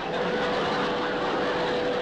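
Sitcom magic sound effect for a levitation: a steady rushing hiss with one held tone running through it, starting suddenly as the music stops.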